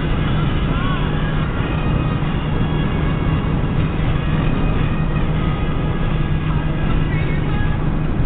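Steady road and engine drone inside a moving car's cabin, with a song playing faintly on the car stereo. About a second in, a husky puppy gives a short howl that rises and falls in pitch.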